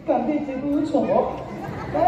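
A Tibetan opera (ache lhamo) performer's voice singing long held notes that slide down at the start and up about a second in.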